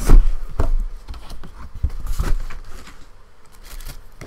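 Cardboard box being opened by hand: a loud knock at the start, then several more knocks and clicks with rustling and tearing of cardboard and paper.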